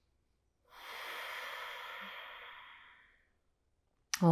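A woman's long, audible breath through the mouth, about two and a half seconds of breathy air. It starts about a second in and fades away.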